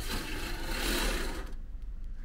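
Fabric curtain at a capsule bed's entrance being pulled along its rail: one sliding rush of cloth and runners lasting about a second and a half.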